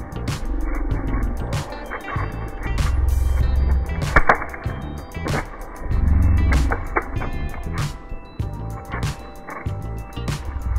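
Background music with a steady beat. Over it, a spinning fidget spinner rolls and knocks into a die-cast Hot Wheels car, giving low rumbles and a few sharp clacks about four seconds in.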